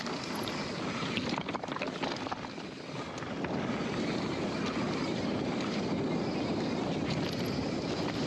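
Mountain bike descending a dry, rocky dirt trail at speed: knobby tyres rolling over dirt and stones with sharp clicks and rattles from the bike, over a steady rush of wind on the microphone.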